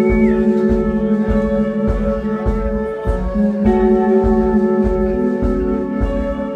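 Live rock band playing an instrumental passage: sustained guitar chords over a steady low beat of about two a second.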